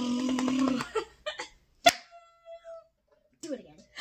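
A vocal drum roll: a held, fluttering rolled "brrr" made with the voice, which stops about a second in. A single sharp clap or slap follows near the two-second mark, then a few short, soft vocal sounds.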